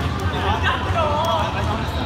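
Players' voices talking and calling out across a gym, over a low steady hum.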